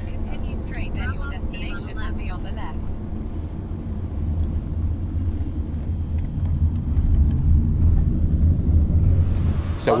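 Low, steady rumble of a car's road and engine noise heard from inside the cabin while it drives, growing louder near the end.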